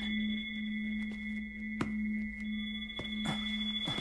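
An eerie steady ringing drone of several held tones, like a tuning fork, with a faint click about two seconds in. It is the strange sound a character says she hears again.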